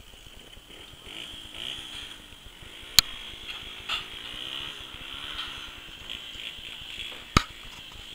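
An engine running at a distance, its pitch wavering up and down, with two sharp clicks: one about three seconds in and one near the end.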